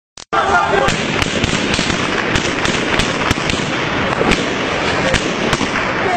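Gunfire: about a dozen sharp shots cracking out at irregular intervals, over a dense background of shouting and street noise.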